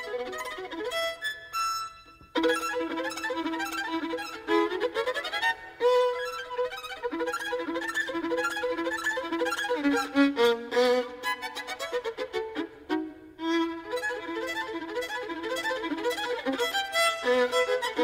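Violin playing a fast classical passage of quick, rapidly changing notes, with a brief break about two seconds in.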